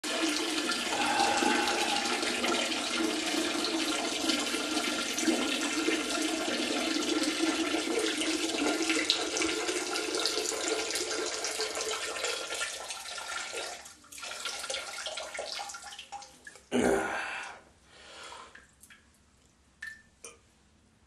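Water running steadily, dying away after about fourteen seconds, followed near the end by a single brief, loud bump.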